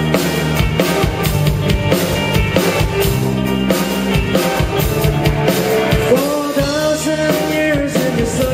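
Live rock band playing, with drum kit, bass guitar and electric guitar driving a steady beat. A male voice comes in singing near the end.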